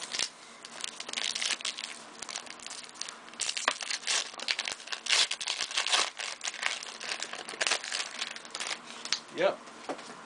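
Trading-card paper wrapper and card sleeve being torn open and handled, crinkling and rustling in quick irregular crackles. A single spoken 'yep' near the end.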